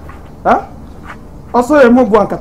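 A man's wordless exclamations: a short rising cry about half a second in, then a longer excited outburst near the end.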